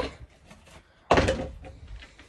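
A single sudden thud about a second in, fading away over half a second, like something knocked or set down against the shed or a feed container.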